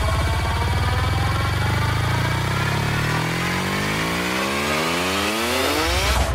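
Electronic dance music build-up: a buzzy synthesizer riser over a sustained bass drone, climbing steadily and ever faster in pitch. It breaks into a heavier low-end hit at the end, the drop into the next track.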